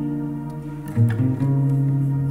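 Acoustic guitar chord ringing and fading, then a new chord with a low bass note picked about a second in and left to ring.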